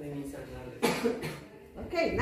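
A single cough about a second in, over low voices in a classroom.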